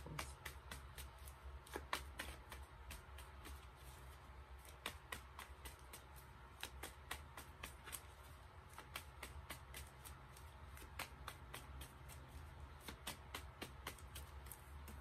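Tarot deck being shuffled by hand: a run of faint, irregular card clicks, several a second, with faint background music underneath.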